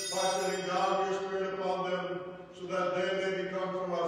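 A priest's voice chanting a Eucharistic prayer over the altar on a single held reciting tone, with a brief pause about halfway through.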